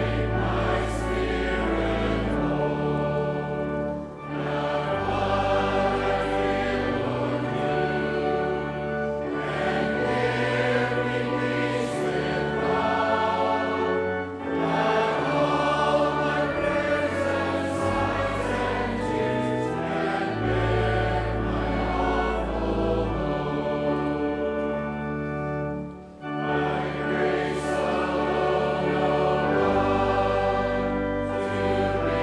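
Church congregation singing a hymn together over an instrument's long held bass notes. The singing pauses briefly between phrases, with a longer break about three-quarters of the way through.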